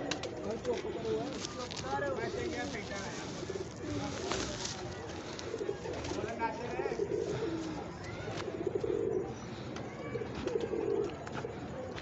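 Domestic pigeons cooing, a series of low repeated coos, with faint voices in the background.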